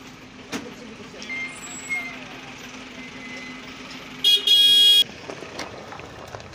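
A vehicle horn gives a quick toot and then a longer blast of under a second, about four seconds in, the loudest sound here. A steady low engine hum runs underneath.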